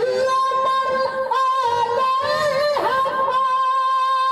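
A man singing a naat (Urdu devotional poem in praise of the Prophet) into a microphone, his voice turning through ornamented runs in the middle and then settling into a long held note near the end.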